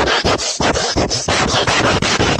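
A cat's fur and face rubbing against a phone camera's microphone, making loud, rapid, uneven scratching and scraping noise, several strokes a second.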